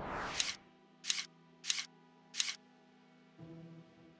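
Animation sound effects over soft background music: a whoosh, then four short, bright, camera-shutter-like clicks about two-thirds of a second apart, marking a zoom into a magnified view.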